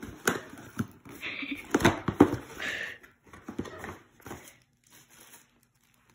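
A cardboard box's top flaps being pulled open and paper packing handled: sharp clicks and cardboard and paper rustling and crinkling, busiest in the first three seconds and thinning out near the end.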